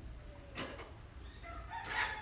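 A rooster crowing faintly, starting about one and a half seconds in. Before it there is a brief rustle of hands handling the tree and tape measure.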